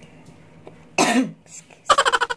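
A single loud cough about a second in, short and rough with a dropping pitch, from a person at the table. Just before the end a rapid run of short, evenly spaced vocal pulses begins.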